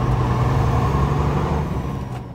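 Truck engine and road noise heard inside the cab while driving: a steady low drone that eases slightly near the end.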